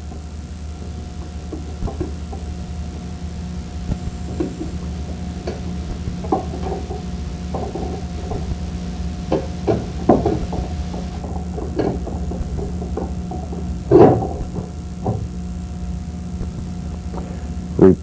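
Light clicks and knocks of metal parts as a new motor armature is wiggled down through the field winding of an air sampler's blower motor, one louder knock about two thirds of the way in. A steady low hum runs underneath.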